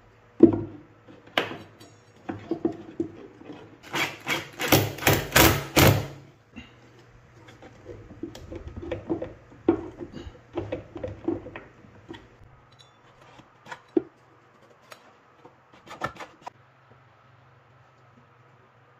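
Plywood parts of a homemade table-saw blade-lift mechanism knocking, clicking and rubbing as they are handled and fitted, with a screwdriver working inside the plywood box. A quick run of sharp taps, about five a second, comes about four seconds in and lasts some two seconds; the rest are scattered single knocks.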